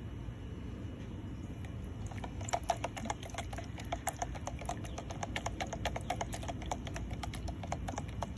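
A spoon stirring ferrous sulfate into water in a clear plastic container, ticking and scraping against the sides in rapid clicks that grow denser about two and a half seconds in.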